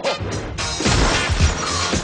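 Trailer music with a loud, sustained crash of objects being smashed, starting about half a second in.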